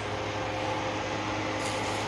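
A steady, distant engine drone with a faint steady hum in it.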